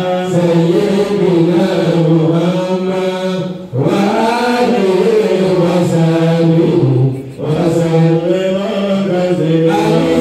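A man's voice chanting an Islamic devotional recitation through a microphone and PA, in long held melodic phrases, pausing for breath briefly about four and seven seconds in.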